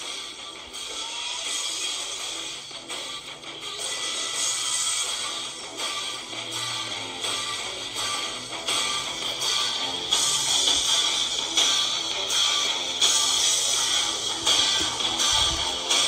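Background music led by guitar.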